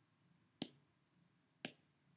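Two short, sharp clicks about a second apart, over near-silent room tone.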